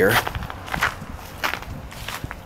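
Footsteps of a person walking over dry grass and patches of old snow, about four irregular steps.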